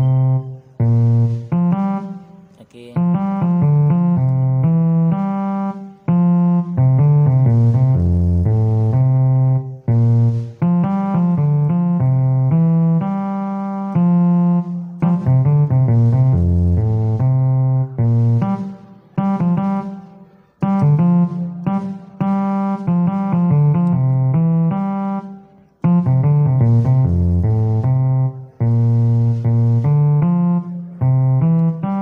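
Electronic keyboard played in short phrases of low chords and notes, each a few seconds long, with brief breaks between them.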